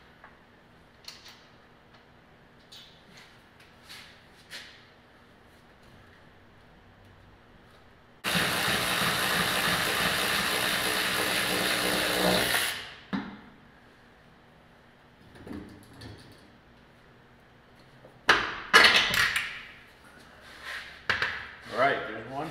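A power tool runs steadily for about four and a half seconds on the rear leaf-spring shackle of a 1969 Mustang, undoing the fastenings. It is followed near the end by several loud metal clanks as the spring is taken down.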